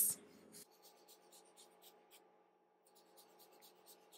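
Sharpie marker drawing wavy lines on construction paper: faint, quick scratchy strokes of the felt tip, about five a second, with a short pause a little past halfway.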